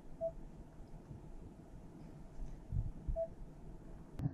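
Two short, faint beeps about three seconds apart, typical of a car infotainment touchscreen confirming taps, over a low rumble inside a quiet, parked car cabin.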